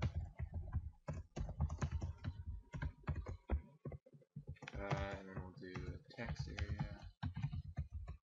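Rapid typing on a computer keyboard, a quick run of keystroke clicks with a couple of brief pauses.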